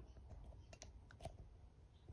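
Near silence: room tone with a few faint clicks in the middle.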